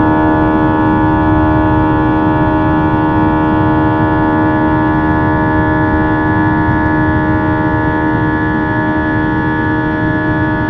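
Airbus A320's IAE V2500 turbofan engines at climb thrust, heard inside the passenger cabin: a steady low rumble with several steady humming tones on top, easing very slightly.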